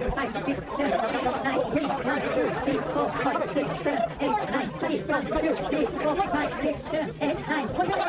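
Many people talking at once: indistinct crowd chatter with no single voice standing out, and a faint, quick, regular ticking behind it.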